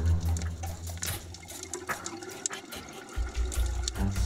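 Underwater ambient sound: a wash of water noise with scattered short clicks and crackles, and a deep low rumble that drops away in the middle and returns near the end.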